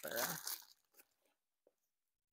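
Packing paper crinkling as a wrapped item is handled, under the tail of a spoken phrase, followed by a couple of faint ticks and then silence.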